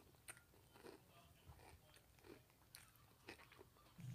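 Faint crunching of breakfast cereal being chewed, in short, irregular crunches.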